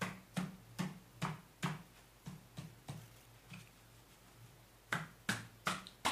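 Sharp knocks on the hollow aluminium casing of a Tesla P85D front drive unit, struck by hand rather than with metal tools, to break the inverter section loose. A run of about five evenly spaced knocks is followed by fainter ones, a pause, then four more quick knocks near the end.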